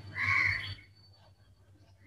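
A brief breathy vocal sound, like a murmur or exhale, lasting about half a second near the start, over a low steady hum.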